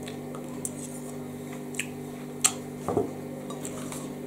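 Metal knife and fork clicking and scraping against the dish while a portion of lasagne is cut and lifted out: a few scattered light clinks, the sharpest about two and a half seconds in, over a steady low hum.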